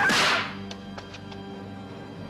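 A sharp whip-like swish at the very start, the dubbed strike sound effect of a martial-arts film fight, then a few faint ticks over soft sustained music.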